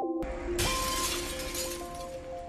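Film score: a synthesizer melody of held notes stepping from pitch to pitch, with a sudden shattering crash like breaking glass a quarter second in that slowly dies away.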